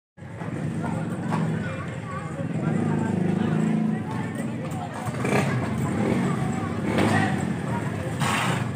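Indistinct voices over a steady low engine hum, with a few sharp knocks.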